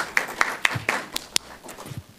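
Small audience applauding, a scattered patter of hand claps that thins out and dies away near the end.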